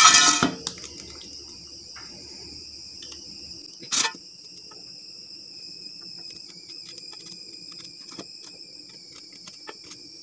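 Steady high chirring of crickets throughout, with faint small ticks and scrapes of a knife cutting bitter gourd over a steel plate. A loud rustling burst at the very start and one sharp click about four seconds in.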